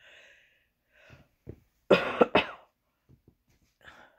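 A woman coughing, twice in quick succession about two seconds in, after a faint breath.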